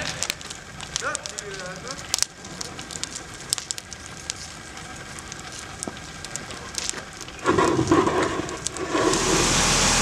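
A burning car crackling and popping steadily, with frequent sharp pops. Near the end a steady loud hiss sets in, a fire hose spraying water onto the fire.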